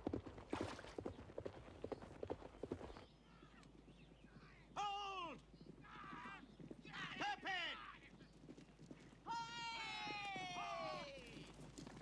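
Horses galloping, their hoofbeats quick and dense for the first three seconds, then horses whinnying several times, the last and longest whinny falling in pitch near the end.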